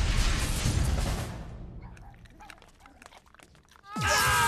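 The rumble of an explosion dying away, with debris settling over about two seconds. A nearly quiet stretch with faint scattered clicks follows.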